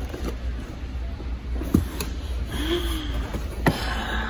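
Background noise of a busy warehouse store: a steady low hum with a few sharp clicks and knocks.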